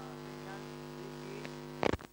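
Steady electrical mains hum on the recording's audio line, with faint voices underneath. Near the end the hum cuts off suddenly with a short, loud crackle.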